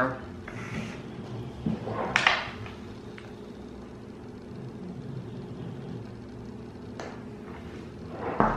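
Quiet room tone with a paper ice cream pint being handled: one brief rustle about two seconds in and a faint click near the end.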